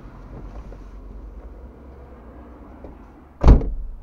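A car door shutting with one heavy, muffled thud about three and a half seconds in. Before it, a low steady rumble of a car moving slowly past.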